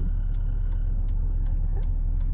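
Car idling at a stop, heard from inside the cabin: a steady low engine rumble with faint regular ticks, roughly two to three a second.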